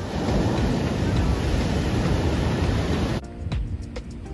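Waves breaking on a beach, a loud steady rush of surf with wind on the microphone, cutting off suddenly about three seconds in as background music with a steady beat takes over.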